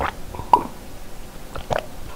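Water being gulped down from a glass mug: three short swallows, one right at the start, one about half a second in and one near the end.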